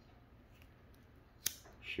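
Quiet room tone broken by a single sharp click about one and a half seconds in, just before a spoken word.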